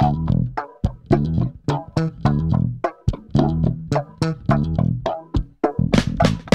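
Instrumental band music: bass guitar and guitar over a steady beat, with no vocals.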